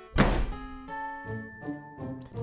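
A door shutting with a loud thunk just after the start, over soft background music with held notes.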